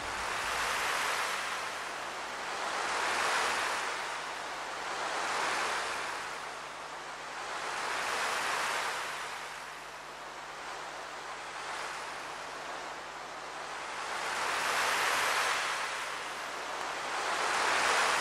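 Sea waves washing in and out, each swell rising and falling over about two to three seconds, with a faint low held tone underneath.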